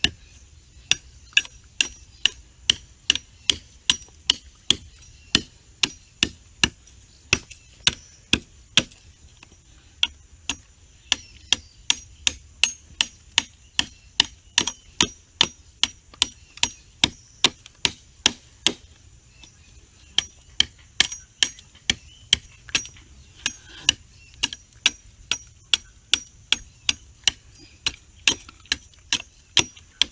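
Machete blade chopping repeatedly into the end of a wooden pole, tapering it into a new tool handle: sharp chops about two a second, with brief pauses around a third and two-thirds of the way through.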